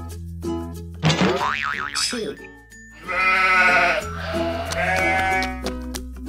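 Sheep bleating, in two calls: a wavering bleat about a second in and a longer one about three seconds in, over cheerful background music.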